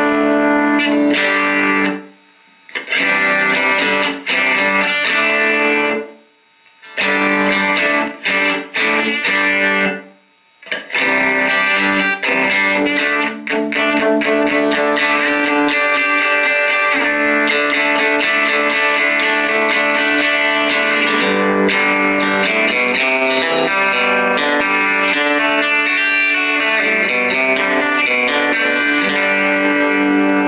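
Electric guitar, a 1963 Fender Telecaster, played through a 1950 Magnatone Varsity tube amp's 8-inch speaker with the volume at five. The playing stops briefly three times in the first eleven seconds, then runs on without a break.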